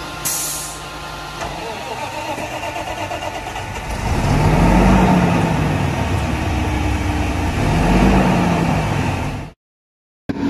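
Mack LE refuse truck's natural-gas engine running, with a brief hiss of air right at the start. It is revved up and back down twice, at about four and about eight seconds in, and the sound cuts off shortly before the end.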